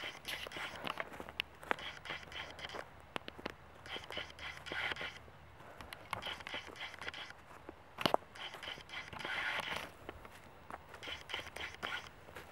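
Footsteps swishing and crunching through field grass at a walking pace, about one step a second, with rustling from the handheld camera and clothing and a sharp click about eight seconds in.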